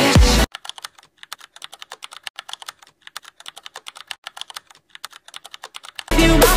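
Music cuts off about half a second in, followed by rapid, quiet keyboard typing: fast, irregular clicks, several a second, until music returns at the very end.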